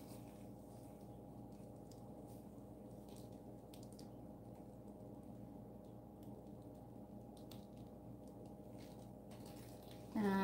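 Near silence: a faint steady room hum with a few soft clicks.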